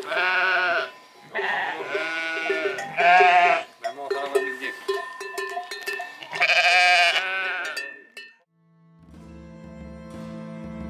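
A flock of sheep bleating loudly, ewes and lambs calling over one another in several quavering bouts as they seek each other out. The bleating stops after about eight seconds, and music begins near the end.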